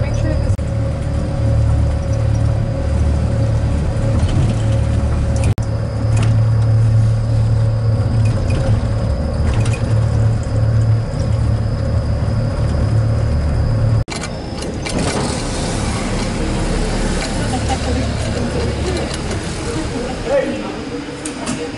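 Steady low rumble with a faint even whine from a small rail car running along its track. The rumble cuts off suddenly about two-thirds of the way in, giving way to a busier, mid-range mix with voices.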